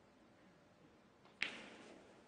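A single sharp knock or click about one and a half seconds in, with a short fading tail, over quiet arena room tone.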